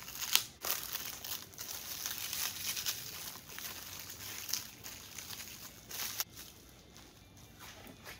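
Plastic cling wrap crinkling as it is stretched over a loaf pan and pressed around its edges, a run of small crackles that dies away about six seconds in.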